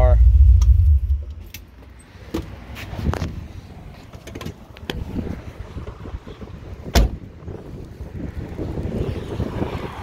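A 396 big-block V8 with custom headers running with a low rumble, then shut off about a second in. Scattered knocks and clicks follow, with one sharp thump near seven seconds as the car door is shut.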